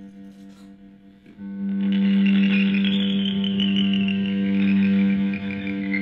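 Electric guitar played through a pedalboard of effects and distortion, holding a steady low drone that dips, then swells back up about a second and a half in. A pulsing high layer over it slowly slides down in pitch.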